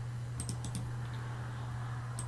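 A few faint, quick clicks from working a computer's mouse and keys, over a steady low electrical hum.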